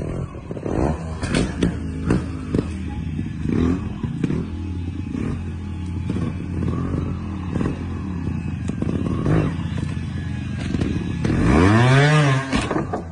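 Trials motorcycle engine revving in short blips over a steady idle, with clattering knocks from the bike hopping and landing. A louder rev rises and falls near the end.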